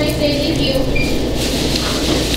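Restaurant room noise: a steady low hum with faint background voices.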